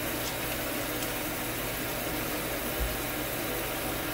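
Water running steadily into a bathtub, a constant hiss.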